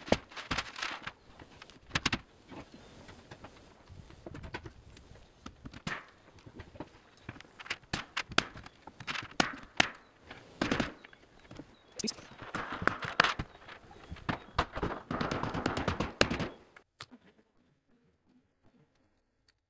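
Irregular wooden knocks and thuds of two-by-four lumber being handled and knocked into place on top of a stick-frame wall, with a couple of short stretches of scraping. It cuts off abruptly near the end.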